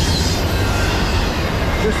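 Cars of a Norfolk Southern intermodal freight train rolling past close by: a steady, loud rumble and rattle of steel wheels on the rails.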